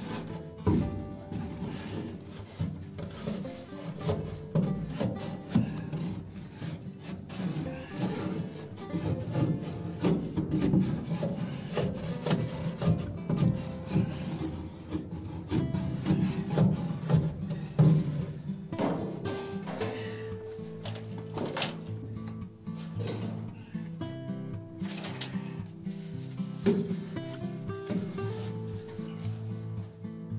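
Irregular rubbing and scraping as gloved hands stuff insulation wool into gaps around wooden attic beams. Background music plays along and is clearer in the second half.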